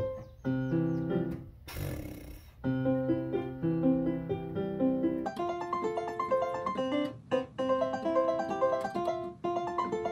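Electronic keyboard in a piano voice played with both hands, a beginner repeating simple C, F and G chords. About two seconds in there is a brief burst of noise.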